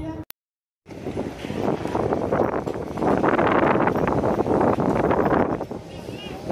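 Wind buffeting an outdoor microphone, a loud, uneven rushing that rises and falls, following a half-second break in the sound near the start.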